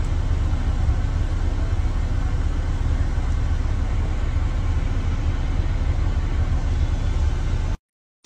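Steady low rumble of a car's engine and road noise heard from inside the cabin through a phone microphone; it cuts off suddenly near the end.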